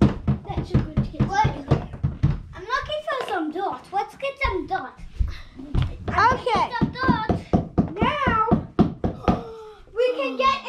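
Children's voices making high, wordless play noises, with a quick run of thumps and knocks in the first couple of seconds.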